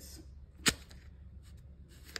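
A single sharp click about two-thirds of a second in, over a faint low hum.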